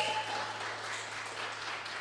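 Audience applauding, with a steady low hum underneath.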